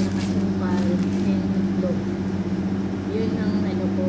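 A steady low hum, with quiet intermittent talking over it.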